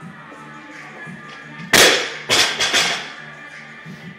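Barbell loaded to 185 lb with bumper plates dropped from overhead onto rubber gym flooring: one loud crash, then a few smaller bounces over the next second, with background music playing.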